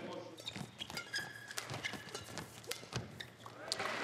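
Badminton rally: sharp racket hits on the shuttlecock at irregular intervals, mixed with players' shoes squeaking and tapping on the court floor.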